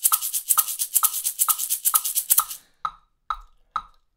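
A maraca filled with small stones shaken in a steady eighth-note rhythm at 132 beats per minute, about four strokes a second, over a metronome clicking on the beat. The shaking stops about two and a half seconds in, and the metronome clicks on alone.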